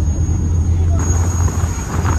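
Steady low rumble of a car ferry under way, its engine drone mixed with wind and the wash of choppy water on the open deck.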